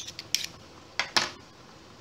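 A few sharp clicks and clinks of kitchen utensils and containers being handled: three quick ones at the start, then two more about a second in, the last the loudest.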